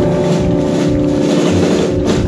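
Live rock band holding a sustained electric guitar chord over a drum roll and cymbal wash, the kind of held ending chord that closes a song.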